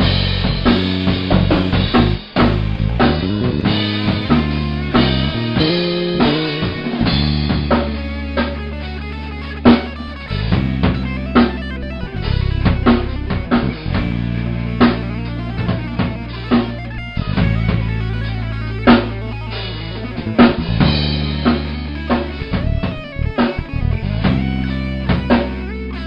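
A Tama acoustic drum kit played live, with kick, snare and cymbals in a busy rock groove and several hard accents. Under it runs a guitar-led instrumental rock track with sustained low notes.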